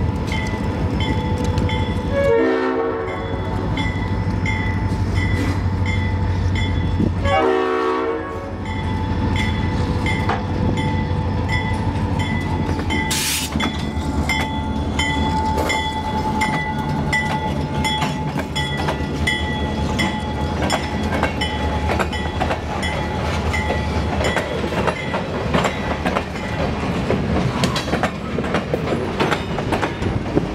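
Diesel freight locomotive sounding its horn for a grade crossing: the tail of one blast, a short blast a couple of seconds in, then a longer blast about seven seconds in, over the engine's rumble as it nears and passes. A crossing bell dings steadily about twice a second throughout. Once the locomotive is by, covered hopper cars roll past with a continuous clicking of wheels over the rail joints.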